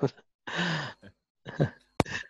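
A man's voice sighing once, a breathy exhale with a slowly falling pitch, then a brief vocal fragment and a sharp click at the very end.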